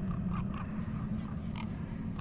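A low, steady rumbling drone that slowly eases off, with a few faint short chirps scattered over it.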